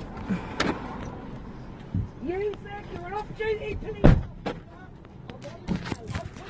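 A single heavy thump about four seconds in, heard from inside a car, with a raised voice outside just before it.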